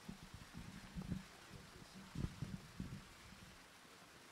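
Quiet background with a few faint low thumps, about a second in and again two to three seconds in.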